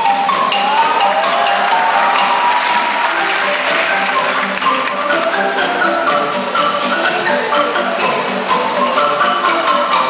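Filipino bamboo band playing live: bamboo marimbas and xylophones struck with mallets in a dense, continuous run of quick melodic notes.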